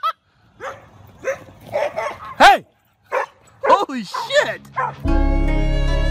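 Dog barking and yelping in a series of separate high calls, some sliding down in pitch. About five seconds in, bowed string music begins.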